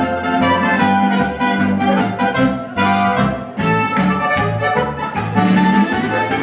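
Oberkrainer-style folk band playing a polka live: clarinet and trumpet over accordion and guitar, with a steady oom-pah bass beat.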